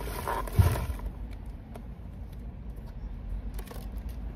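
Handling noise from groceries being moved about: rustling in the first second with a low bump about half a second in, then a steady low outdoor rumble with a few faint clicks as items are taken from a shopping trolley.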